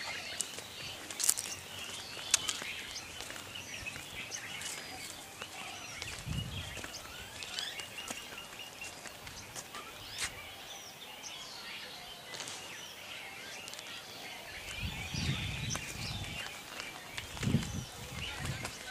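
Many small birds chirping and calling over a steady outdoor background, with a few low rumbles about six seconds in and again near the end.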